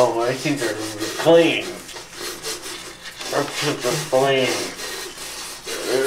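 Toothbrushes scrubbing teeth, a scratchy rubbing, with four short muffled vocal sounds made through mouths full of toothbrush.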